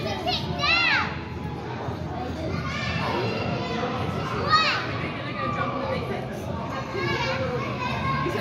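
Background hubbub of many children shouting and playing in a large indoor hall, with high-pitched squeals cutting through, one within the first second and another about halfway through.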